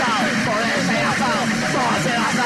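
Harsh noise from a lo-fi noisecore tape recording: many short squealing glides up and down over a steady low hum, with no clear beat.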